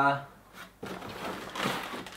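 Cardboard packing scraping and rustling as it is worked loose inside a 3D printer's chamber. The sound builds from about a second in and peaks just before the end.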